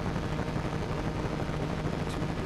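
Steady low hum with a rushing background noise and no distinct events.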